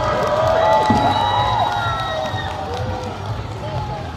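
Crowd of parade spectators calling out and cheering, many voices rising and falling at once and loudest in the first two seconds, over parade music with a steady low beat.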